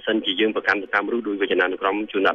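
A man speaking continuously in a lecturing voice. The sound is thin and band-limited, like a telephone or radio recording.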